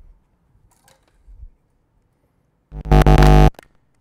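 A sudden, very loud distorted synthesizer buzz, under a second long, from a prototype embedded hardware synth box during start-up, cutting off abruptly; the box is rebooted afterwards.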